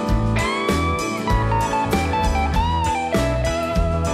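Background music: a slide guitar playing over a bass line and a steady drum beat, with sliding notes.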